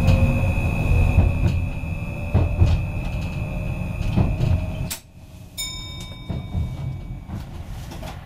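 Inside the cab of a Stadler FLIRT electric multiple unit on the move: steady low rumble with irregular knocks of the wheels over the track, a constant high whine and a lower traction whine that rises slightly in pitch. About five seconds in, the sound drops off suddenly to a quieter hum with several steady whining tones.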